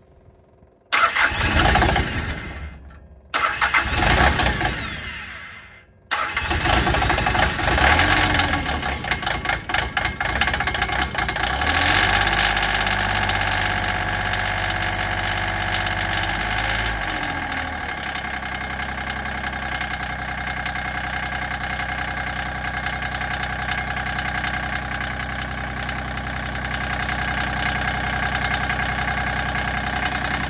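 The homemade log splitter's engine being started: two short tries that die away, then it catches about six seconds in. It runs unevenly and then faster for a while, and settles to a steady, lower idle about seventeen seconds in.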